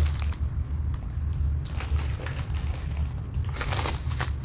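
Plastic grocery packets crinkling and rustling as they are handled and lifted out of a cardboard box, with a burst of louder crinkling near the end, over a steady low hum.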